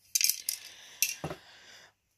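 A quick run of light clicks and clinks of small hard objects in the first half-second, then two more knocks about a second in.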